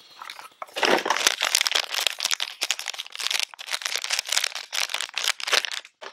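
Anti-static bag crinkling and rustling in the hands as a circuit board is slid out of it: an irregular run of crackles that stops just before the end.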